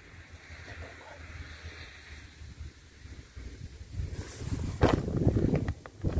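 Wind buffeting the microphone, with louder rustling and handling noise over the last couple of seconds.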